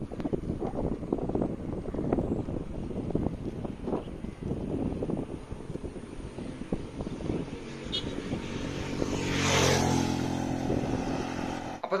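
Wind buffeting the microphone of a bicycle being ridden along a road, a rough, fluttering rumble. About nine seconds in, a motor vehicle's engine comes up loudly and passes by.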